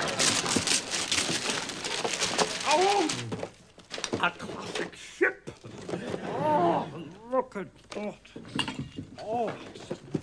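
Wrapping paper being torn off a gift box in quick rips for about the first three seconds, followed by a man's short, high wordless squeals and hums of delight, several of them, each rising and falling in pitch.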